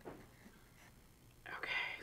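Near silence: quiet room tone, then a soft, breathy spoken "okay" near the end.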